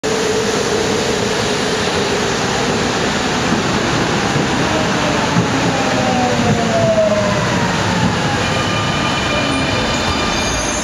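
A Vienna U6 type T light-rail train pulls into the station and brakes along the platform, its running noise steady, with a whine that falls in pitch as it slows. Steady high tones come in near the end.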